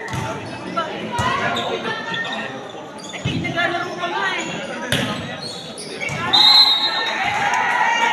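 Volleyball being hit during play in an echoing gymnasium: sharp smacks of the ball, a few seconds apart, over the voices of players and spectators. A brief high-pitched tone sounds a little after six seconds in.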